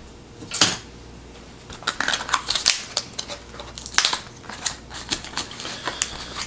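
A cardboard flashlight box being handled and opened by hand. There is one knock about half a second in, then a quick run of clicks, scrapes and rustles from the cardboard flaps and packaging from about two seconds on.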